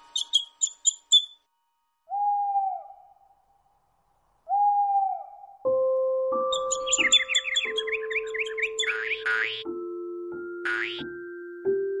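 Cartoon sound effects: a quick run of about five tiny bird chirps, then two single owl hoots a couple of seconds apart. From about halfway on, soft lullaby music with long held notes comes in, with a fast bird twittering over it.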